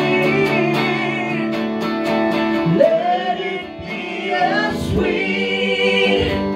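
Live worship song: a man and a woman singing into microphones over an electric guitar, with a brief dip in loudness a little past halfway.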